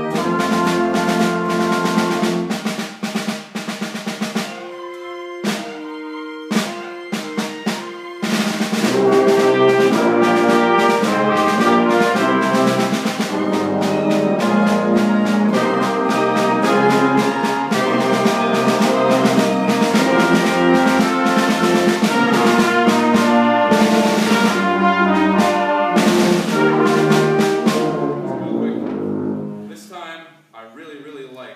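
Orchestra playing a passage in rehearsal, with brass to the fore and percussion strikes. The sound thins to a few sparse held chords about five seconds in, then the full ensemble comes back in loudly at about eight seconds and plays on until it breaks off near the end.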